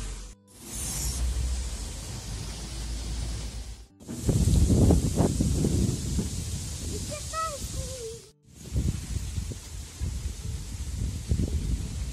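Gusty wind buffeting the microphone as an irregular low rumble, strongest about four to six seconds in, broken by three abrupt cuts. A child's short vocal sound comes in between.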